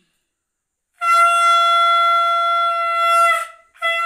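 Conch shell (shankha) blown in one long, steady, loud note starting about a second in, breaking off briefly and starting again near the end. It is blown as the auspicious sound of a Hindu blessing ritual.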